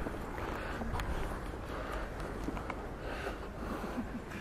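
Quiet city street background: a steady low rumble with scattered faint clicks, and one sharper click about a second in.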